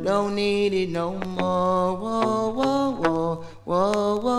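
Reggae music: long, held, chant-like vocal notes that step from pitch to pitch over a sparse backing with little bass, with a few sharp percussive ticks.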